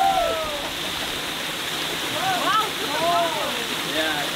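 Steady rush of a small waterfall pouring onto rocks, with people's voices calling out over it at the start and again about two seconds in.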